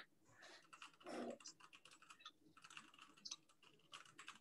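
Faint typing on a computer keyboard: a run of quick, light key clicks. A short, soft low sound comes about a second in.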